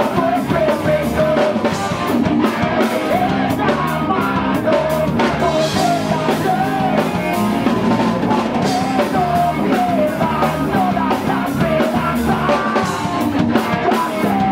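Live rock band playing at full volume: electric guitars and a drum kit, with a vocalist singing into a hand-held microphone.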